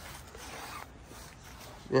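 A soft rustling noise for just under a second, then a low steady background. A man's voice says a short 'yeah' at the very end.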